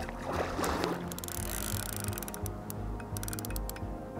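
Steady background music, over which a large grass carp thrashes and splashes at the water's surface about half a second in, followed by a run of sharp splashy clicks.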